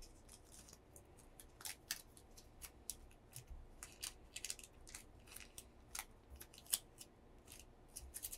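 Long fingernails clicking and tapping against one another in quick, irregular sharp clicks, with one louder click late on.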